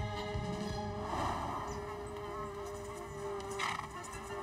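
Background music with a steady held tone, and a fly buzzing briefly about a second in.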